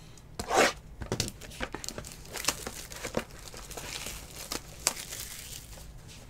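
Plastic shrink wrap being torn open and peeled off a sealed trading-card box, with a louder rip about half a second in followed by crinkling and crackling.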